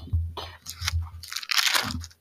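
Rustling, crinkling handling noise close to the microphone: several short scrapes over a low rumble, as of something being picked up and handled.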